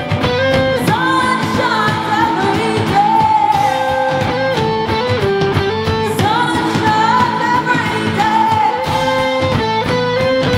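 Live heavy rock band playing loud: electric guitars, bass and drums, with a held, wavering melodic line over the top.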